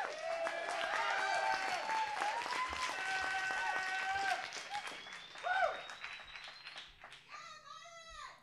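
Audience applauding and cheering, the clapping thinning out and fading over the last few seconds.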